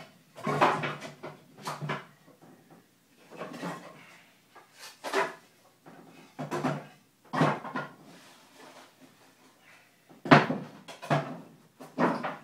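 Debris being dropped and pushed into a plastic trash can: irregular clunks and rattles, about one a second, the loudest near the end.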